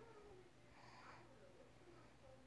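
Near silence: faint room tone, with a soft sound coming back about every two seconds.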